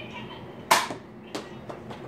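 Modified Nerf Zombie Strike Hammershot spring blaster: one loud sharp snap with a short ringing tail, followed about half a second later by a lighter click.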